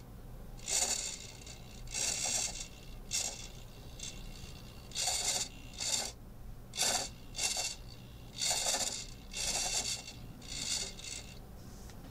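Small hobby servo turning a mini R2-D2's dome, running in about a dozen short bursts, each under a second, with a scratchy gear sound.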